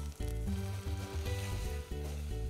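Fenugreek leaves, peas and cashew paste sizzling in a pot on a gas flame, with a fine steady hiss, under background music with a low bass line.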